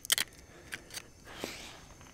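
Small clicks and a brief rasp of clear adhesive tape being handled and pulled from a small plastic tape dispenser: a few sharp clicks at the start, two more single clicks, then a short rasp a little after the middle.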